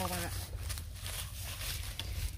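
Irregular crackly rustling of dry water-hyacinth stalks being stirred and stepped on, over a low steady rumble.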